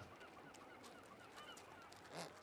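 Near silence, with a faint run of about eight quick, evenly spaced chirps in the first second and a half.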